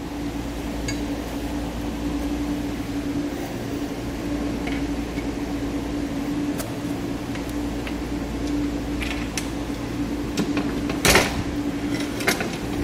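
A steady mechanical hum with one constant tone, under a few light clicks and a sharper knock about eleven seconds in, as aluminum ladder-rack parts (an upright, a crossbar track and square nuts) are fitted together by hand.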